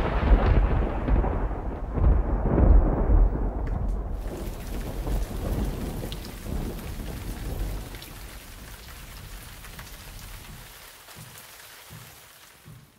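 Thunder rolling, loud at first and dying away, with a second swell about three seconds in, then a steady hiss of rain that slowly fades toward the end.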